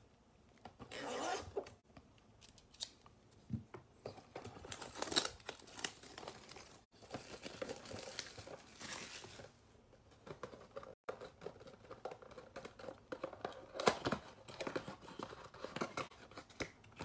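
Plastic wrap crinkling and cardboard tearing as a trading-card blaster box is opened by hand, in irregular bursts of rustling and ripping.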